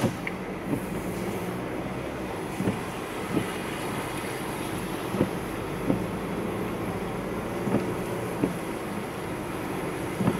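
Steady road and engine noise inside a car driving on a wet road, with windshield wipers sweeping. There is a short thump at each end of the sweep, in pairs about two and a half seconds apart.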